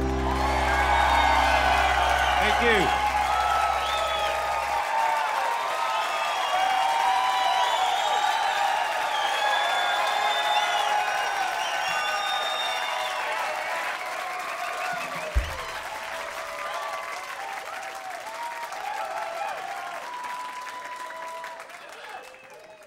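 Studio audience applauding and cheering with whoops and whistles at the end of a rock song, the band's last chord ringing out for about the first five seconds. The applause slowly dies down, with a single thump about fifteen seconds in.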